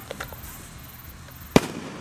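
A handheld shot-firing firework fires one sharp, loud bang about one and a half seconds in, with a couple of faint pops before it.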